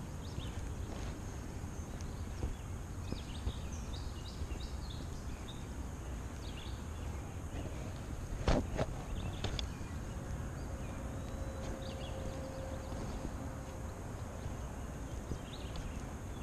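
Small birds chirping here and there over a low steady rumble, with one sharp knock about halfway through.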